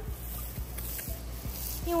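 Water spraying from a garden hose's spray nozzle, a steady hiss.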